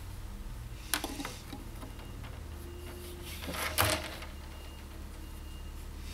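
Hands working a metal wire-stripping machine: a sharp click about a second in, then a short scraping slide a little before four seconds, over a low steady hum.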